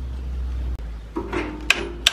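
A hammer striking a metal gear to drive it onto the shaft of a chaff cutter. There is a low rumble at first, then the first two blows come in the last half-second, each with a brief metallic ring.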